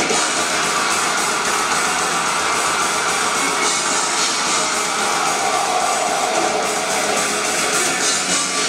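Melodic death metal band playing live, with distorted electric guitars and keyboard in a dense, steady wall of sound, recorded from among the audience in a club.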